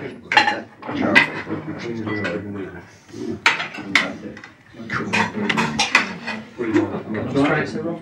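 Cutlery and china plates clinking repeatedly, in many short sharp clinks, as food is served at a dining table, with voices talking under it.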